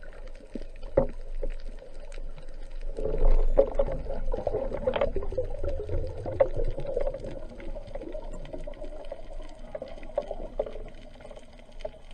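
Underwater noise recorded through a diving camera's waterproof housing: a watery rushing wash with scattered sharp clicks, swelling from about three seconds in and easing off near the end.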